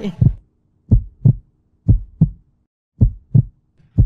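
Heartbeat sound effect: a double low thump about once a second, four beats in all, under a faint low drone that cuts out partway through. It is the suspense cue laid under a countdown while a contestant decides.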